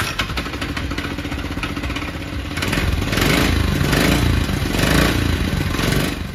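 Porsche 911 Junior's small 83 cc Honda petrol engine running, with a rapid, even beat. It gets louder about halfway through and rises and falls in repeated swells as it is revved.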